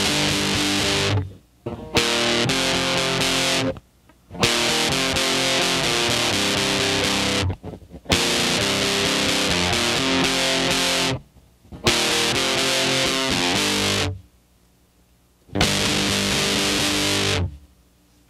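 Fuzz-distorted electric guitar in C tuning strumming two-string chords in short bursts. Each burst rings for one to three seconds and is cut off suddenly, with short silent rests between.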